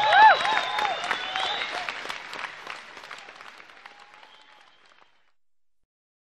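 Audience applauding at the end of a live rock song, with a few shouts in the first second, the clapping fading away until it stops about five seconds in.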